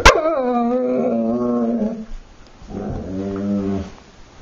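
A dog 'talking': two drawn-out whiny vocal complaints. The first slides down in pitch and then holds for about two seconds, and the second is shorter and lower. A sharp click comes right at the start.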